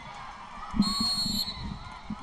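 A referee's whistle blown once, a steady shrill tone lasting under a second, about a second in, over background crowd noise.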